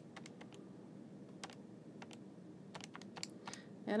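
Calculator keys being pressed: a string of short, irregularly spaced clicks as an arithmetic expression is keyed in, over a faint steady hum.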